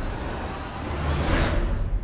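Cinematic action sound effects: a deep rumble with rushing whooshes, one swelling up about a second and a half in.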